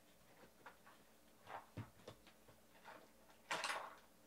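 Faint handling sounds: a few soft clicks and taps, then a short louder rattling scrape about three and a half seconds in.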